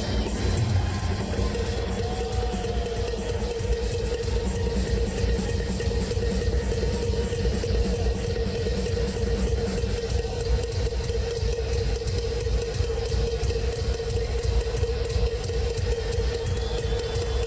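Rock drum solo on a large kit, a dense, continuous rumble of rapid bass-drum and tom strokes, with a steady held tone sounding underneath from about a second and a half in.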